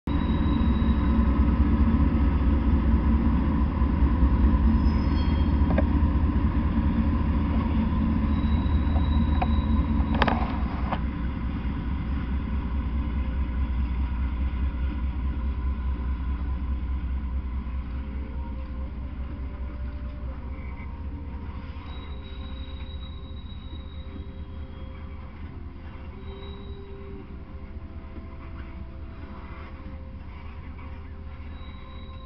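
Norfolk Southern freight train passing close by: diesel locomotives rumbling loudly, then covered hopper cars rolling past on the rails. There is a single sharp clank about ten seconds in, and the rumble fades steadily over the second half.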